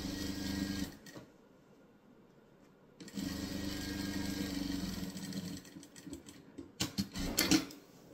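Electric sewing machine stitching patchwork strips onto a denim base in two short runs, about a second and then about two seconds, with a pause between. A few brief knocks and rustles come near the end.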